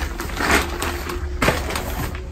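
A fabric caravan under-skirt being pushed into its channel along the caravan's lower side: rustling and scraping of fabric and plastic edging, with a knock about one and a half seconds in.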